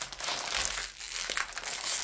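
Crinkling and rustling of a foil-plastic trading-card starter-pack bag as hands grip it and pull it open.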